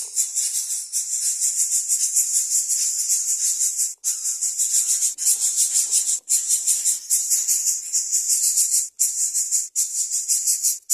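Greater coucal nestlings begging: a loud, high, rasping hiss that pulses rapidly and is broken by a few short gaps.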